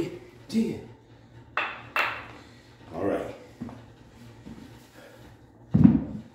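A man's short, forceful voiced breaths or grunts, one every second or so, in time with his dumbbell reps, with two sharper hissing exhales early on. Just before the end come heavy thuds as the dumbbells are set down on the wooden floor.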